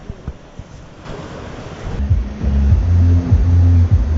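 Wind buffeting the microphone over the wash of surf, then background music with a deep, loud bass line comes in about halfway and takes over.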